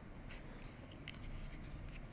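Faint rubbing and light scratching of a small cardboard box being turned over in the fingers.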